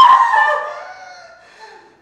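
A woman screaming: one long, high-pitched cry that is loudest at first and fades away over about a second and a half.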